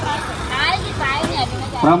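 People talking in the background over a steady low rumble of street traffic, with a man's voice growing louder near the end.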